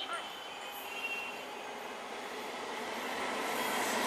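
Electric multiple unit (EMU) local trains approaching on parallel tracks, their running noise growing steadily louder.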